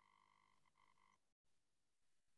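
Near silence: a gap in a video-call stream.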